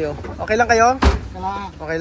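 A car door slammed shut once, about a second in: a single sharp thud, the loudest sound here, with a voice calling out in drawn-out tones before and after it.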